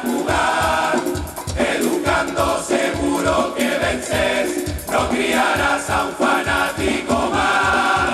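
A Canarian carnival murga, a large male chorus, singing loudly in unison with a steady percussion beat under the voices.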